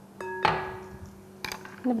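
A glass clinks against a glass mixing bowl, which rings on with a steady tone while sugar is tipped in with a short rush. A small sharp knock follows about a second later.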